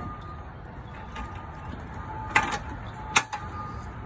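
Two sharp knocks a little under a second apart, footsteps coming down the metal steps of a toy hauler's rear ramp door, over a steady low outdoor rumble.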